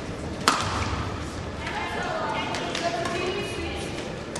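Badminton hall sound between rallies: one sharp smack about half a second in, like a racket striking a shuttlecock, then voices carrying in the large hall.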